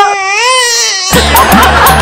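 A single high voice wailing in long, wavering cries. About a second in, it is cut off by loud music with a heavy bass beat.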